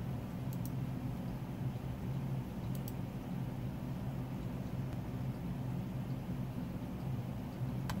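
Steady low mechanical hum, like a fan or air-handling unit running, with two pairs of faint clicks about half a second and about three seconds in.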